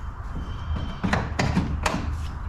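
Three sharp plastic clicks and knocks, about a second in and near the end, as a JuiceBox charger's J1772 connector with a Tesla adapter on it is handled against the charger's holster, where the adapter keeps it from fitting. A low steady hum runs underneath.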